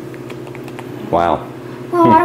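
Low steady room hum with faint scattered clicks, and a brief voiced sound from a person about a second in.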